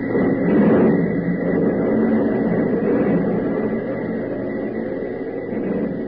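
Radio-drama sound effect of factory assembly-line machinery: a dense, rumbling mechanical clatter that swells up at the start and then holds steady, heard through a narrow-band old broadcast recording.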